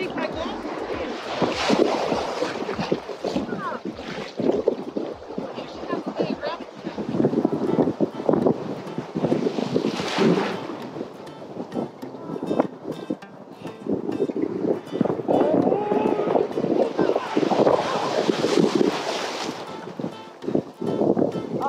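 Ocean surf breaking and water splashing close around the camera, in repeated loud surges. The largest surge comes about ten seconds in, as a wave crashes right over the camera. Wind buffets the microphone.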